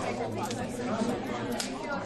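Many people talking at once in a large room: overlapping conversations at tables, a steady hubbub of chatter.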